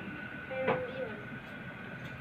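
Indoor room tone with a steady high-pitched hum. A brief fragment of a voice and a sharp click come under a second in.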